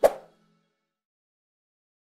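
A single short pop, the click sound effect of an animated subscribe button being pressed, over the last fading notes of outro music.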